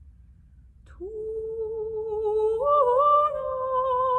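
A woman's unaccompanied voice enters about a second in and holds a long sustained note with vibrato. It steps up to a slightly higher pitch a little past halfway and keeps sounding.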